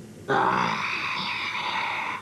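A boy's voice giving a drawn-out, breathy wail, lasting about two seconds and starting a moment in.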